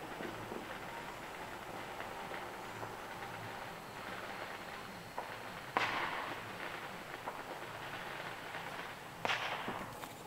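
Distant fireworks: two sharp bangs, one about six seconds in and one near the end, each fading out over about a second, over a steady outdoor hiss.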